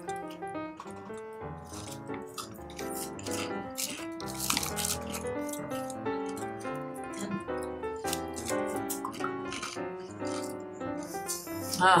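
Background music: a melody with light, regular percussion.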